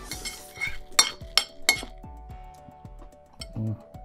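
A metal fork clinking against a ceramic plate while scooping rice, with three sharp clinks close together a little after a second in.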